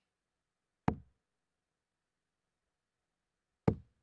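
Two darts striking a Winmau bristle dartboard, one sharp knock about a second in and another near the end, with silence between them.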